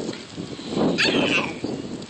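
A toddler's short, breathy grunt about halfway through, rising into a brief high-pitched squeal, as she pulls herself up to stand.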